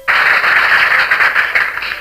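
Loud hiss and crackle of an old archival recording of a speech, cutting in suddenly and easing a little near the end, before any words are heard.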